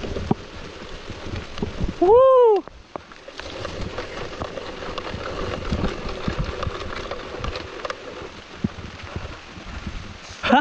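Mountain bike riding down a wet dirt trail: a steady hiss of tyres on wet ground with frequent knocks and clatter from the bike over the bumps. About two seconds in, the rider lets out one loud whoop that rises and falls in pitch.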